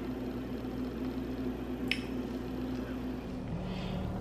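Steady low mechanical hum, with one sharp click about two seconds in; near the end the hum gives way to a different, lower drone.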